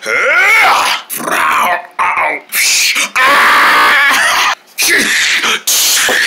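A person making loud non-word vocal sound effects: growling, pitched cries and breathy whooshing noises in several bursts with short breaks.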